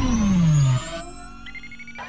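Electronic intro music and sound effects: a loud synthesized tone sliding down in pitch that cuts off abruptly under a second in, followed by quieter held tones and a faint high tone rising slowly.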